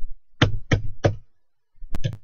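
Computer keyboard keys struck hard near the microphone, pressing Ctrl+C to interrupt a running program. Three sharp knocks about a third of a second apart, then another near the end.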